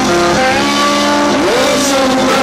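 Live rock band playing: electric guitar holding sustained distorted notes, with a note bending upward about one and a half seconds in, over drums and cymbals.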